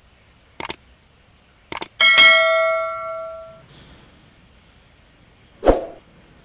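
Subscribe-animation sound effects: two quick double mouse clicks about a second apart, then a bell ding that rings out for about a second and a half. A short dull knock comes near the end.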